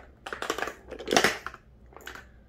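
Plastic lip gloss tubes clicking and clattering against one another as they are handled and dropped into a bucket of other tubes, with a louder clatter a little past halfway.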